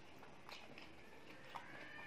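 Faint sounds of eating by hand from a steel tray: fingers working rice, chewing and a couple of soft clicks or smacks, with a short faint high-pitched tone near the end.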